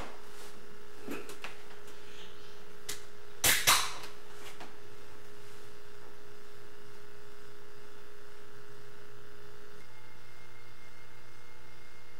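A few faint sharp clicks in the first three seconds, then two louder sharp snaps close together about three and a half seconds in, over steady tape hiss and a low hum whose pitch shifts near the end.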